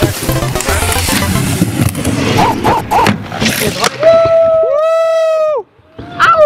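Loud music with a low beat. About four seconds in it gives way to one long held vocal note that slides down at the end. The sound cuts off sharply just before the next shot.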